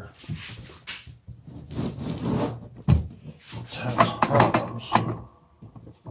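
Handling noise: irregular rustling, scraping and clicking, with a sharp low thump about three seconds in and a cluster of knocks around four to five seconds.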